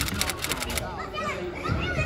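Children's voices calling and chattering at play, with a quick run of sharp clicks that stops a little under a second in.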